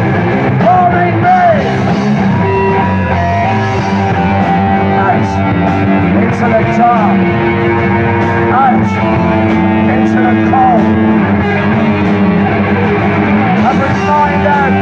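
Live heavy metal band playing loud and steady: electric guitar with bending notes over bass guitar, drums and cymbals.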